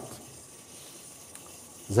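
Faint, steady hiss of wort running from the brewhouse tap and pipework during lautering, with one small click about two-thirds of the way through.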